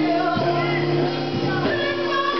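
A woman singing a gospel song into a microphone, her voice amplified through a PA, over instrumental backing that holds sustained low chords.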